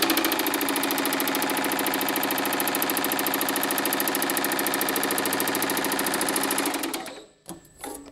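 Baileigh MH-19 power hammer in rigid mode with a beading die, hitting sheet metal with rapid short-stroke blows as a bead line is run into the panel. The fast, even hammering winds down and stops about seven seconds in.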